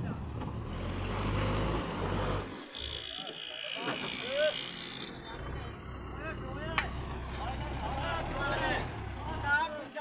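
A tractor's diesel engine runs with a steady low drone. The drone drops out for about two seconds around three seconds in, then resumes. Short voice-like calls sound faintly over it.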